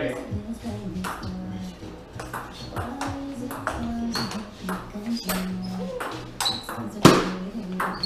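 Table tennis rally with a Nittaku 44 mm 3-star ball: a quick, irregular run of sharp clicks as the ball is struck by the paddles and bounces on the table, with one loud hard hit about seven seconds in. Music plays in the background.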